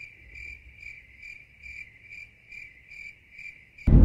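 Crickets chirping: a steady high trill pulsing about three times a second, cut in suddenly and cut off just as suddenly, as the edited-in 'awkward silence' sound effect.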